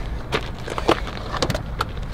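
Running shoes scuffing and crunching on loose gravel, a handful of short scattered crackles, over a low rumble of wind on the microphone.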